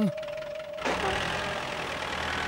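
A small tractor's engine running as it drives along. The engine noise comes up about a second in, after a steady held tone fades.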